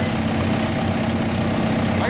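Diesel engine of a Dodge Ram pickup running under load as it pulls the sled. It holds a steady drone.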